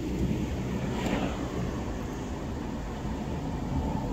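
Steady road and engine noise heard from inside a moving car's cabin, with a slight swell about a second in.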